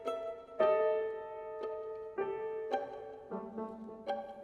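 Violin and piano playing slow contemporary classical chamber music: piano notes struck every half second to a second and left ringing under held violin tones.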